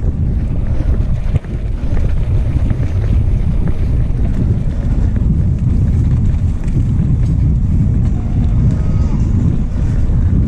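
Wind buffeting the microphone of a handlebar-mounted action camera, over the rumble and rattle of a mountain bike rolling on a cobblestone street. The noise is loud and steady, dipping briefly about a second and a half in.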